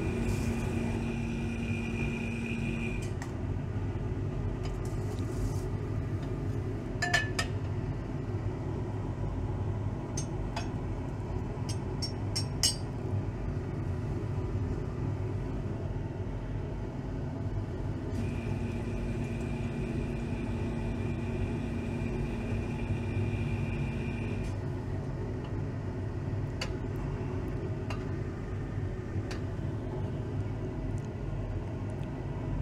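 Glassware clinking: a glass flask knocks a few times against a glass jar as blue nitric acid solution is poured into it, over a steady low rumble of lab equipment running. A steady whine comes on at the start for a few seconds and again for several seconds past the middle.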